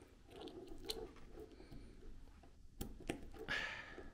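Faint handling noise of a USB cable and a small plastic USB-to-USB-C adapter being fitted together in the hand, with a few small sharp clicks and light rustling.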